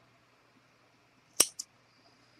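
Small scissors snipping through a strand of yarn: one sharp snip about halfway through, followed by a fainter click.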